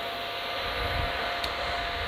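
Small handheld battery fan switched on and running, a steady whirring rush with a faint steady whine.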